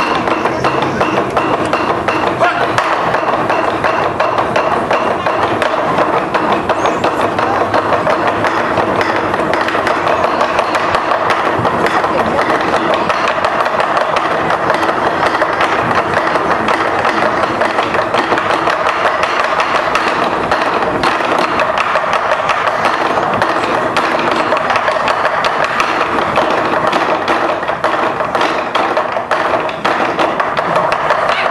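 Ensemble of large Chinese barrel drums beaten with sticks in a fast, continuous, driving rhythm, the strokes coming thick and unbroken.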